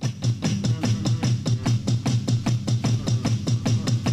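Electronic drum kit played along with a band's demo track: a fast, steady beat over a pulsing low bass line.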